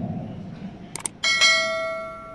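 Subscribe-button overlay sound effect: a mouse click, then about a second in a second click followed straight away by a bright notification bell chime that rings out and fades.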